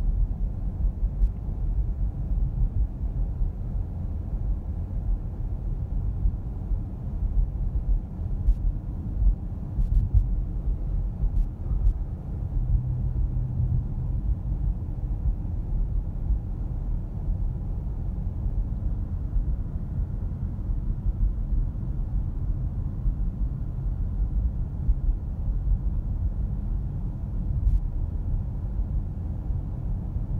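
Steady low road and tyre rumble inside the cabin of a Tesla Model S 85D electric car cruising at about 45 to 50 mph, with a few faint clicks.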